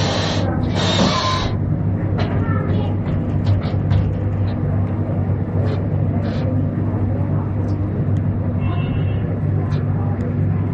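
Commercial kitchen noise: a loud, steady low hum of running equipment, with a brief hiss in the first second and a half and scattered light knocks and clatter.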